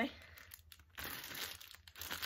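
Plastic zip-top bag full of cellophane-wrapped peppermint candies crinkling as it is handled, mostly from about a second in.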